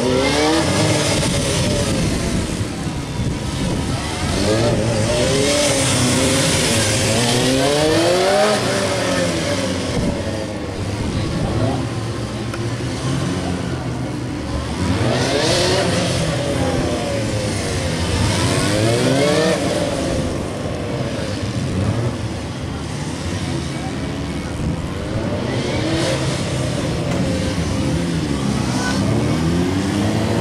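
Motorcycle engine revving up and falling back again and again, its pitch rising and dropping every few seconds as the bike accelerates between cones and slows for tight turns.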